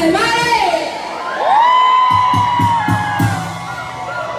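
Live Mexican banda music played loud in a club: a long high note swells in, holds, and falls away over quick low beats, about five a second. A crowd whoop sounds at the start.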